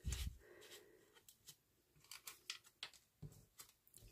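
Faint paper handling: a small paper tag being slid into a folded paper pocket, with light rustles and clicks. There is a soft thump at the start and another about three seconds in.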